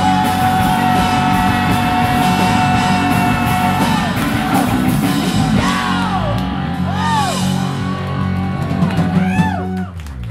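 Rock band playing live, with electric guitar, bass and drums, closing out a song. A long held high note runs for the first four seconds. Then come swooping rising-and-falling pitch arcs, which grow more frequent near the end as the music starts to wind down.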